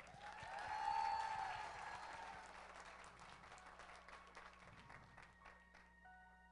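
Audience applause that swells to its loudest about a second in and then gradually tapers off, with a voice calling out over it near the start.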